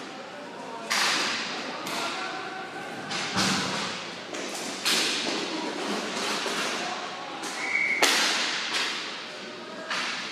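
Inline roller hockey play: sharp clacks of sticks and puck, about six in ten seconds, each trailing off in the rink hall's reverberation.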